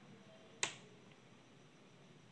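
A single sharp click about half a second in, over faint steady background noise.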